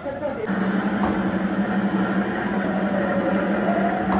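Steady low mechanical hum from an animatronic hell diorama's motor, switching on abruptly about half a second in, with voices underneath.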